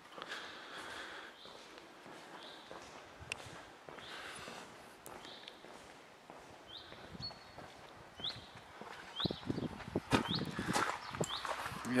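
Footsteps of a person walking, growing louder over the last few seconds, with short high chirps recurring every second or so.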